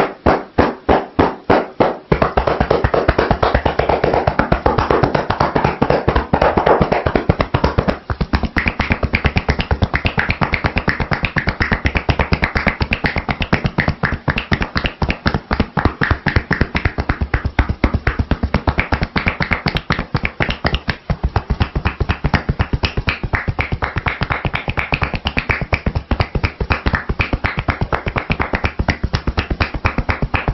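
Hands striking rapidly in percussion massage on a seated person's shoulders and head, a fast, even patter of strikes. The strikes are distinct for the first couple of seconds, then quicken into a near-continuous patter.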